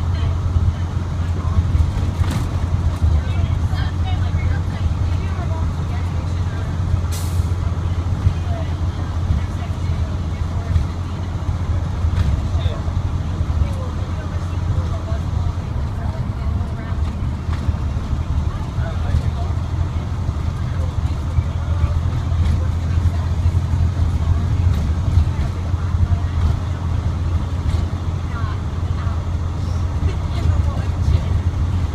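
Cab interior of a 2006 IC CE300 school bus under way: its International DT466E diesel engine runs with a steady low drone over road noise. A brief sharp noise cuts through about seven seconds in.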